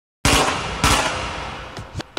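Two gunshot sound effects on a hip hop record, about half a second apart, each with a long echoing tail that fades away.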